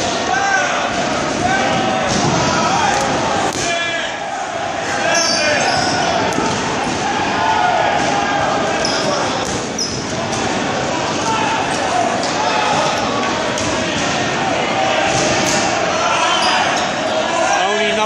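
Dodgeballs bouncing and smacking off a gym floor during play, with players' voices shouting and calling over one another throughout, echoing in a large hall.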